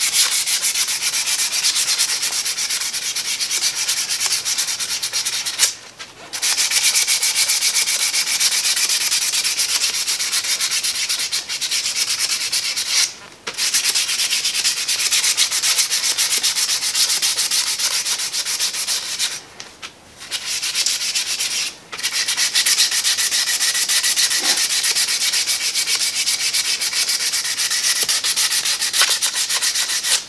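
Hand sanding of the wooden spokes of a 1927 Ford Model T wheel with 220-grit sandpaper: fast, continuous rubbing strokes that stop briefly about four times.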